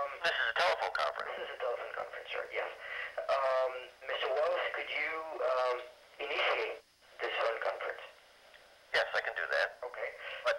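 Speech heard over a telephone line, thin-sounding and cut off in the low range, with a pause of about a second some eight seconds in.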